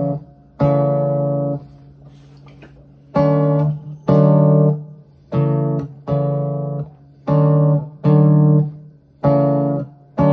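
Nylon-string classical guitar sounding single chords in a slow chord-change exercise between F major 7 and A minor 7. Each chord rings for under a second and is cut off sharply as the fretting hand lifts to form the next one. After one chord there is a pause of about a second and a half, then chords follow about once a second.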